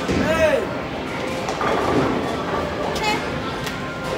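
A short voiced exclamation that rises and falls right at the start, over the steady noisy din of a bowling alley. A denser rush of noise follows about a second and a half in.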